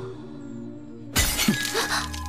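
A sudden, loud shattering crash about a second in, over sustained background music.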